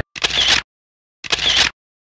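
Two camera shutter sounds about a second apart, with dead silence between them.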